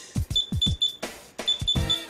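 Short high-pitched key beeps from a JR XG14 radio-control transmitter, about six of them in two quick groups, as its buttons are pressed to move through the menu. Background music with a low beat plays underneath.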